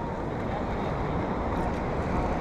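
Steady wind noise on the microphone, heaviest in the low end, with sea surf beneath it.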